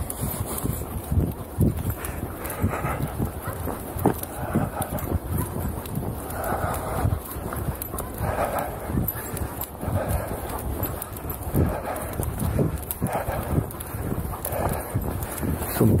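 Footsteps walking at a brisk pace along a dirt path covered in dry leaves, a steady run of soft steps about two a second.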